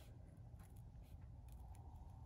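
A few faint snips of sharp scissors cutting around the edge of embroidered vinyl.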